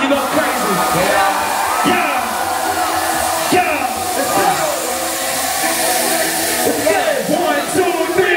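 Stage CO2 jets blasting a steady, loud hiss, with the crowd screaming and cheering underneath.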